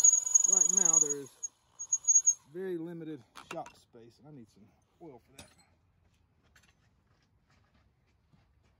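Hand-held electric drill whining as it finishes boring a quarter-inch rivet hole in a steel spoon handle, winding down and stopping about two seconds in. A man's voice and a few light clicks follow.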